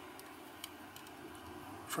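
A few faint ticks and light scrubbing as a watercolour brush works paint in the metal mixing lid of a pan palette.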